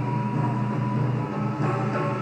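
Live taiko drum ensemble music: a steady low rumble with a held tone above it, and a few sharp drum strikes near the end.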